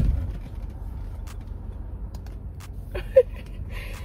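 Steady low rumble inside a parked SUV's cabin with its engine idling, with a few faint clicks and one short sharp knock about three seconds in.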